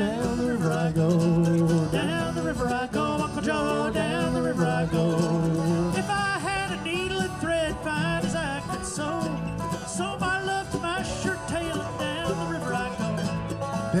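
Live acoustic string band playing an old-time tune together: guitar, mandolin, banjo and viola da gamba.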